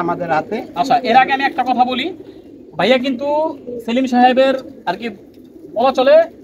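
Domestic pigeons cooing from the loft, heard under men's voices.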